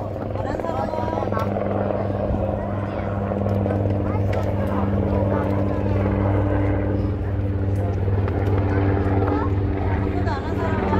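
A steady, low machine hum with a constant pitch, with faint voices chattering in the background.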